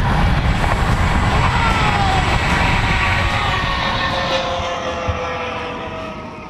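Rush of a high-speed zip wire ride: heavy wind buffeting on the helmet camera's microphone, with a faint whine from the trolley running on the steel cable that slowly drops in pitch. The sound fades away near the end.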